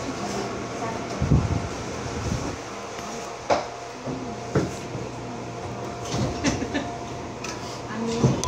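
Inside a Seoul Subway Line 2 train car as it slows to a stop at a station platform: a steady ventilation hum with a few dull knocks and clunks from the car, and faint voices in the background.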